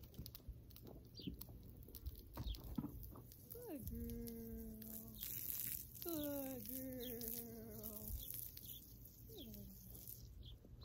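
Garden hose spraying water onto a horse, a hiss with scattered splashes. Over it a woman's voice gives three long, drawn-out soothing calls, each starting with a downward slide and then held on one pitch, the first two over a second long.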